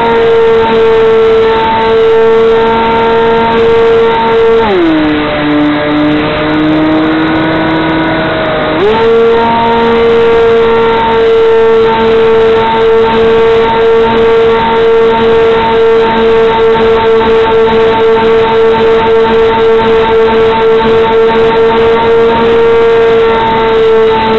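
RC airplane's motor and propeller, heard close up from a camera on the plane: a loud, steady whine at high throttle. About five seconds in, the throttle is pulled back and the pitch drops for about four seconds, then climbs back to the full-throttle whine, over a rush of air.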